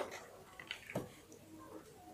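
Faint handling sounds of a small plastic toy figure being picked up: a sharp click at the start and another about a second in, with a few lighter ticks between.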